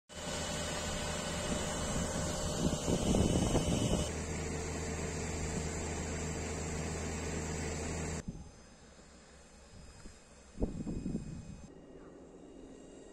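A fire engine's engine runs steadily at its pump, a low, even drone that stops suddenly about eight seconds in. What is left is a much quieter outdoor background with a brief buffeting near the end.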